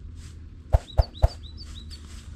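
Three quick dull thuds about a quarter second apart, heavy fabric being beaten out and raising dust, with a small bird chirping repeatedly.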